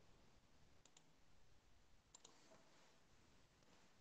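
Near silence, with a few faint computer-mouse clicks: two just before a second in and two more just after two seconds in.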